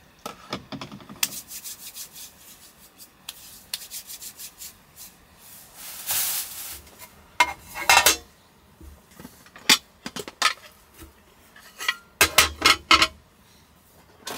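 A metal tray and other cookware being lifted out of a storage crate and set down on a tabletop: rubbing and scraping, with a run of clinks and knocks. The loudest knocks come about eight seconds in and in a quick cluster near the end.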